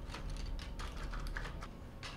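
Jigsaw puzzle pieces being sifted and set down on a wooden table: an irregular scatter of light clicks and taps.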